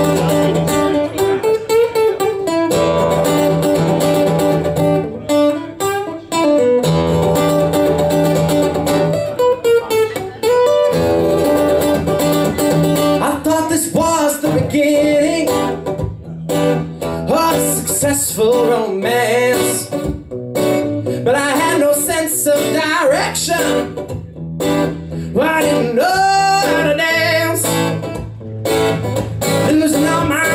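Solo acoustic guitar playing a blues song, held chords in the first half, with a man's voice singing over it from about halfway through.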